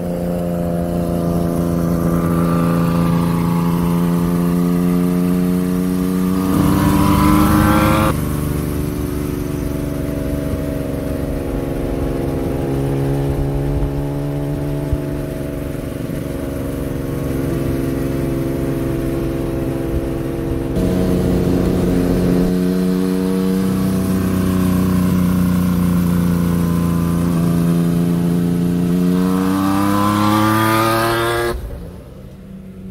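Honda CBX 1000's air-cooled inline-six engine running under way, a strong steady note that rises in pitch as the bike accelerates about seven seconds in and again near the end.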